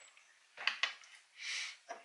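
Quiet handling of small metal spring clamps on a wooden tabletop: two light clicks, a short breath, then another click near the end.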